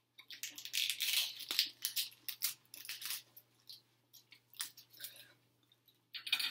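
Close-up eating sounds: a run of short crackly crunches and tearing noises, dense for the first three seconds, then sparser clicks.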